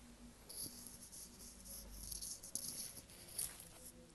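Whiteboard being wiped clean with an eraser, rubbing off marker writing: a faint swishing in a run of quick strokes that starts about half a second in and stops near the end.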